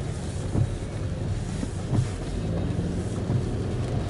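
Car cabin noise while driving slowly on a wet street in the rain: a steady low rumble of engine and tyres, with a couple of soft thumps, about half a second and two seconds in.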